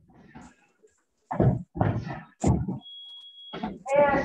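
Four dull thuds of kicks landing on a freestanding heavy bag, coming in the second half, with one short, steady, high electronic beep about three seconds in.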